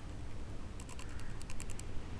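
A quick run of about ten light, sharp clicks in the second half, over a steady low hum.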